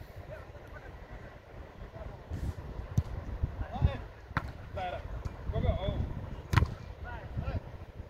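Football being kicked: a few sharp thuds some seconds apart, among shouts from players across the pitch and low wind rumble on the microphone.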